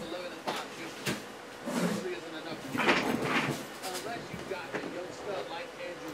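Indistinct, low voice with a few scattered clicks and knocks of handling, over a faint steady hum.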